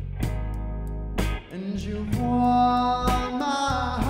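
A blues trio playing live: guitar and bass guitar over a steady low bass line, with sharp rhythmic hits and a long held note that enters about two seconds in.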